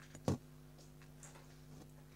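Someone eating a crunchy homemade cookie: one sharp crunch about a third of a second in, then a few faint chewing clicks, over a steady low hum.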